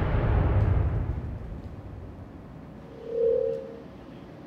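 A deep rumble from a dramatic music sting fades out over the first second or two. About three seconds in comes a single short steady beep on a telephone line, as a caller's line connects.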